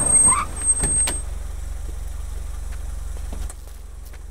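A car's engine idling with a steady low rumble, with a couple of light clicks near the start. The rumble drops away about three and a half seconds in.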